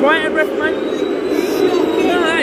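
Loud football stadium crowd noise: many voices at once, with nearby fans' voices rising and falling over the mass of sound.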